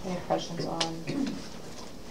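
A person's voice making a brief low murmur with no clear words, dropping in pitch at the end. Two sharp clicks from desk or paper handling come about a third of a second and just under a second in.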